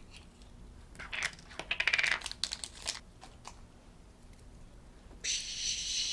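Small plastic toy capsule being worked open in the hands: a quick cluster of sharp plastic clicks and rattles about a second in, lasting about two seconds, then a few single clicks. A hissy rustle starts near the end.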